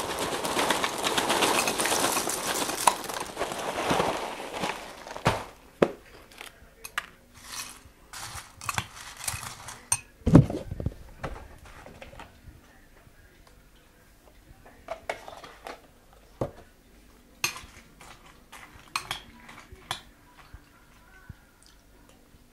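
Dry cereal poured from a cardboard box into a bowl, rattling for about four seconds. After that come scattered clicks and knocks of tableware, with one louder thump about ten seconds in, then a spoon lightly clinking against the bowl.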